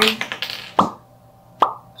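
Capsules knocking inside a plastic supplement bottle as it is tipped to shake one out: two short, hollow plops a little under a second apart.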